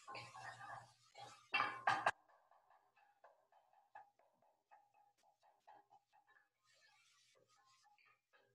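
Sausage browning in a pan, poked and broken up with a utensil: a rough scraping and sizzling noise that stops suddenly about two seconds in. Faint scattered clicks follow.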